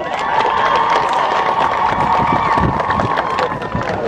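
Crowd cheering and shouting, with a steady high tone held over it for about three and a half seconds.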